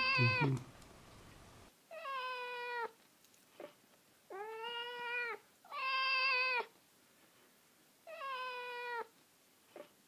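A whippet singing on its own: the end of one drawn-out howl at the start, then four more howls of about a second each, each held at a steady pitch, with short silent gaps between.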